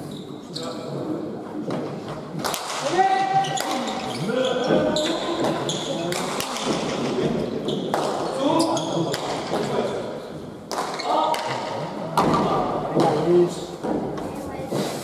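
Pelota ball struck bare-handed and smacking off the walls and floor of an indoor trinquet court during a rally: a series of sharp impacts a second or few apart, each followed by the hall's echo. Voices call out between the strikes.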